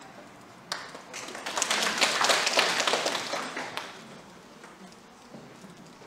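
Audience applauding briefly: the clapping starts about a second in, swells, and dies away by about four seconds in, after a single sharp knock just before it.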